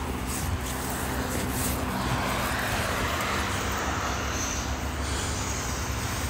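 Jeep Wrangler 4xe idling steadily, a constant low hum under an even outdoor hiss of wind and traffic.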